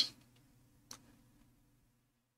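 Near silence with a faint low hum and a single short click about a second in.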